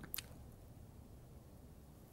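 Near-silent room tone with one faint, brief mouth click just after the start.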